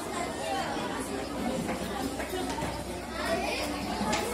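Indistinct chatter of many voices, children's among them, in a large hall with no single clear speaker.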